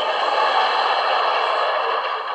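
Studio audience laughing, a steady swell of many voices at once.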